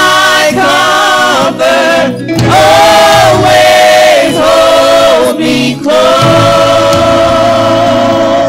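Small gospel vocal group singing in harmony into microphones, moving through sustained notes and settling on a long held note about six seconds in, over steady low accompanying tones.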